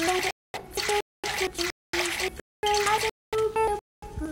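An edited sound track chopped into short pieces, about two a second, with dead silence between them. Each piece holds a high-pitched voice over a wet, squishy hiss.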